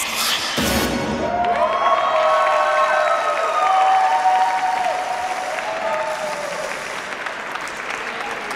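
The program music ends with a few loud drum hits in the first second. Audience applause follows, with drawn-out cheering calls over it for a few seconds.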